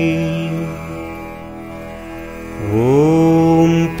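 Male voice chanting a Tamil devotional potri over a steady drone. A held chanted note fades away, then near the end the voice slides up into a long sustained 'Om'.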